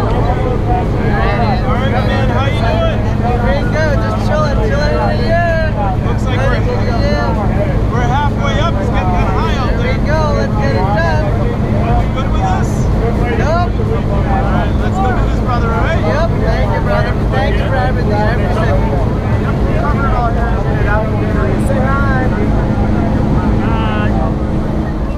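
Steady low drone of a skydiving jump plane's engine and propeller heard inside the cabin in flight, with voices talking and shouting over it.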